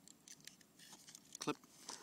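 Faint small ticks and a snip as monofilament fishing line is cut in the small built-in line cutter of a Click 2 Knot knot-tying tool.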